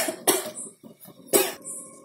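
A short sharp knock of a slotted steel spoon against the steel cooking pot as it is set down, with a second knock just after. About a second and a half in there is a short cough.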